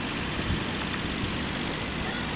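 Steady outdoor background rumble and hiss, with no distinct event standing out.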